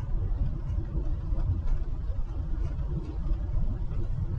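Steady low rumble of a truck driving along a paved road: engine and tyre noise.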